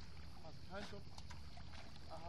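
Light splashing and lapping of shallow sea water as a boxer dog paddles, with a few short splashes. A steady low rumble sits underneath, and faint distant voices come in briefly about two thirds of a second in.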